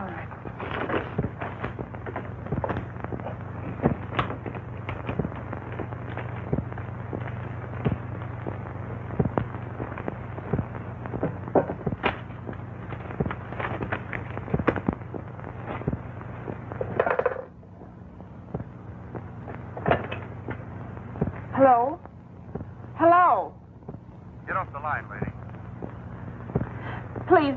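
Crackle and hiss of an old film soundtrack over a steady low hum, dense with small clicks for most of the stretch and dropping away about two-thirds of the way in. Near the end, a few short bursts of voice.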